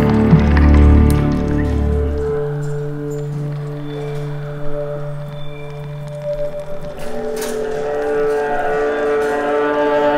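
Contemporary chamber-ensemble music of long held tones. A deep low drone stops about two and a half seconds in, leaving steady mid-range tones with a few scattered knocks, and more tones build up again near the end.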